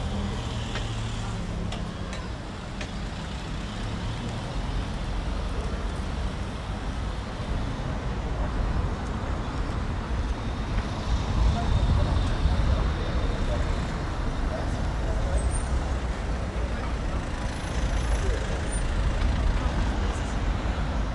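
City street ambience: a low traffic rumble that swells about halfway through, with the voices of passers-by.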